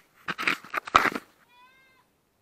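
Several loud, uneven crunches and scuffs on stony ground, stopping a little over a second in. A faint, short, high-pitched call follows near the end, lasting about half a second.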